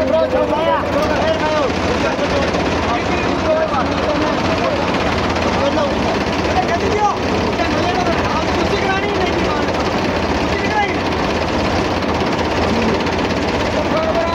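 Diesel tractor engines running steadily at a constant pitch, with men's voices over them.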